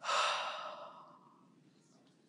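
A woman breathing out in one long audible sigh, starting suddenly and fading away over about a second and a half.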